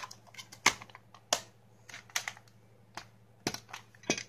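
Plastic DVD cases in cardboard slipcases being handled, giving a few sharp, irregularly spaced clicks and knocks, the loudest two in the first second and a half.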